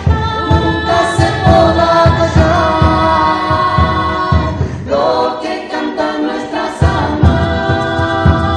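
Several voices, male and female, singing a song together over conga drums played by hand. The drums drop out for about a second and a half past the middle while the singing carries on, then come back in.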